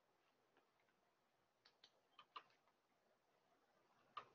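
Near silence with about half a dozen faint, sharp keyboard clicks, bunched in the middle, as code is edited.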